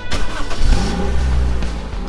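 Jeep Wrangler engine revving: a deep rumble with a gliding pitch that swells early on and eases off toward the end.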